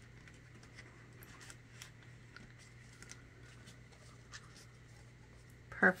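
Faint rustling and scattered small ticks of ribbon and cardstock being handled as a ribbon is tied in a knot around a paper card.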